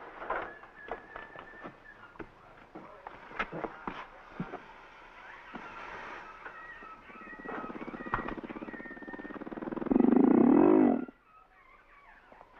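A growling animal, the penned crocodiles, with a pulsing growl that builds and is loudest near the end before it breaks off abruptly. Before it there are scattered knocks and faint high whistling tones.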